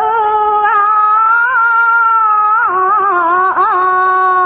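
A single voice singing one long held note in Khmer Buddhist chant style, sustained for about two and a half seconds and then broken into a few quick ornamental turns before settling on a held note again.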